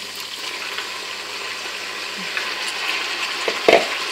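Lamb sizzling steadily in hot oil in a pan as chopped tomatoes and green chillies are tipped in, with one sharp knock near the end.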